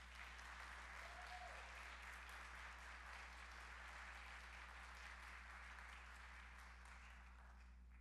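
Congregation applauding: a steady patter of many hands clapping that fades out near the end.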